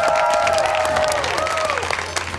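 A small group of people clapping, with a long held cheering voice over the claps that fades out a little past halfway.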